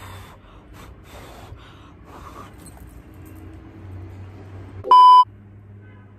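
A short, loud electronic beep at one steady pitch, lasting about a third of a second, near the end, over faint breathy rustling and a low steady hum.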